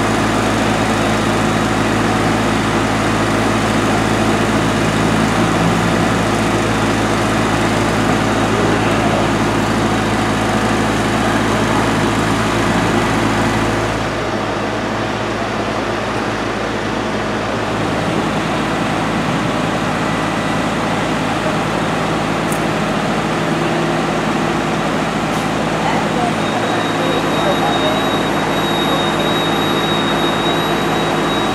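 Fire engine's engine running steadily at constant speed, driving its pump to feed the hoses laid from it. It is a little quieter from about halfway, with a thin high whine near the end.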